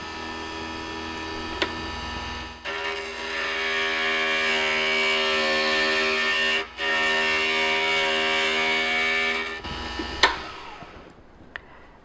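Glass grinder motor running with a steady hum; from about two and a half seconds in, a piece of glass is pressed against the spinning diamond bit, adding a loud grinding noise for about seven seconds with a brief break midway, as its jagged nipped edges are ground smooth. The glass then comes off the bit, and the motor hum drops away near the end.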